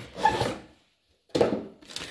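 Cardboard box and molded pulp packing inserts being handled and pulled out. Two short bursts of rubbing and scraping come with a moment of dead silence between them.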